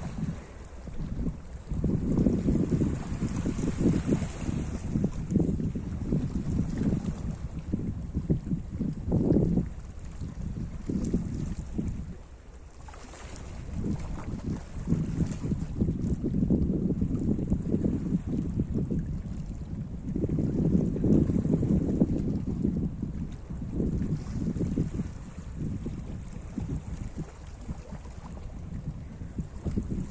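Small sea waves washing over a rocky shore, with wind buffeting the microphone in low rumbling gusts that swell and fade every few seconds and ease off briefly about twelve seconds in.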